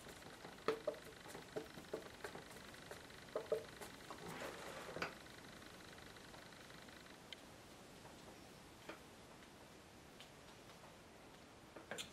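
A few faint light taps, then a soft scrubbing about four seconds in, as a paintbrush picks up and mixes paint on a palette; after that, only quiet room tone.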